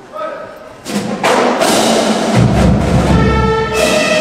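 Marching band strikes up about a second in: sharp percussion hits open it, then brass comes in loud, with a deep bass layer joining about halfway through and held brass notes near the end.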